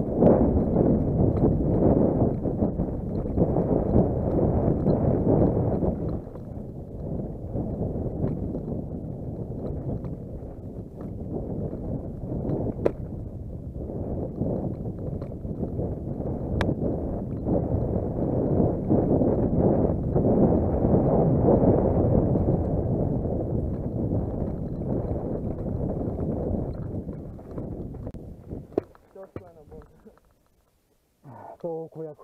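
Wind buffeting a helmet-mounted camera's microphone and the rattle of a downhill mountain bike over a rocky trail, rising and falling with speed and with a few sharp knocks. It fades away over the last couple of seconds as the bike slows to a stop.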